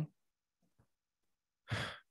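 A person sighs near the end: one short, breathy exhale close to a microphone.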